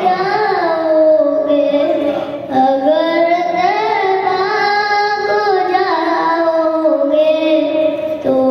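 A boy's voice singing a naat, unaccompanied, into a microphone, holding long notes that bend and waver in ornament, with a brief break for breath about two and a half seconds in.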